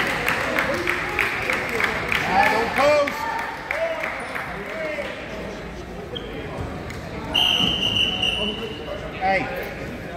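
Chatter in a school gym with scattered thuds and shoe squeaks from wrestling on the mat. About seven seconds in, a referee's whistle sounds one steady, shrill blast of about a second and a half, and the wrestlers separate.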